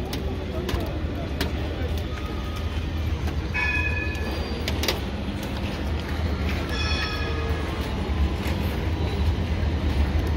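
Busy city street ambience: a steady low rumble of traffic and wind on the microphone, with passers-by talking. A few short high tones sound about four and seven seconds in.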